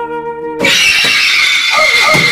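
Gentle held flute-like musical notes, cut off about half a second in by a sudden, loud, harsh scream from a man as he stretches in bed.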